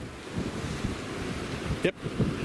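Wind gusting against the microphone over a steady rush of surf.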